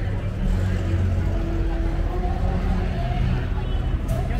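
A vehicle engine running with a steady low rumble, growing a little louder about half a second in, over the voices of people nearby.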